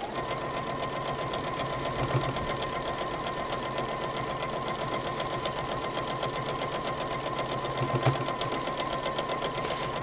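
Electric sewing machine stitching a patchwork seam at a steady speed without pause, its motor giving a steady whine under the rapid needle strokes.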